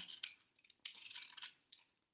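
Vegetable peeler blade shaving a strip of peel off a firm green apple: a soft scraping stroke about a second in, with a shorter one just before it.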